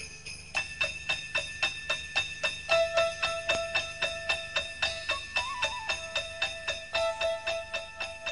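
Instrumental intro of a Christmas song: sleigh bells shaken in a steady rhythm, about four shakes a second, over soft held notes, with a simple melody coming in about three seconds in.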